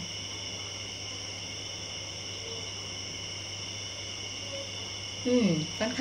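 A steady, high-pitched background chorus of insects, with a low hum beneath it. A woman's voice begins near the end.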